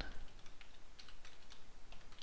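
Typing on a computer keyboard: a few light key clicks at an irregular pace.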